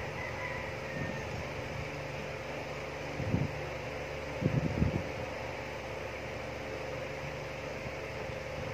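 Steady hum of a fan running, with a few soft low knocks about three seconds in and again between four and five seconds in.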